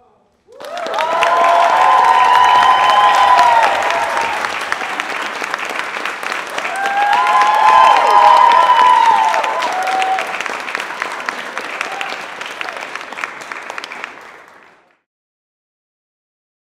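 Audience applauding and cheering. The clapping starts suddenly about half a second in, swells twice with cheers rising over it, and fades out near the end.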